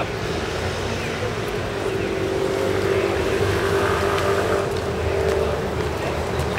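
A motor vehicle's engine running in street traffic, a steady hum that grows through the middle and fades out near the end.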